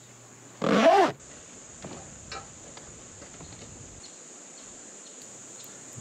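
A short, wavering animal-like call about a second in, over a faint, steady, high-pitched insect drone.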